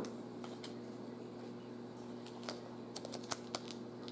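Faint, scattered light clicks and taps of handling, coming more often in the second half, over a steady low hum.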